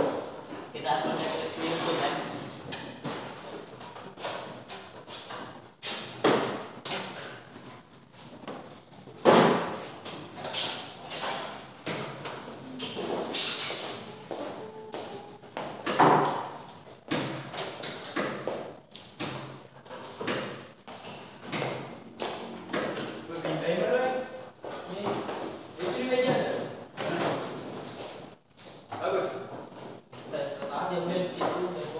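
Scattered knocks, taps and thuds of an electrical control panel box being handled, its hinged door swung open and its inside worked on, with people talking in the background.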